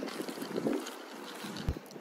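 Wind blowing on the microphone, a faint even hiss with a soft bump near the end.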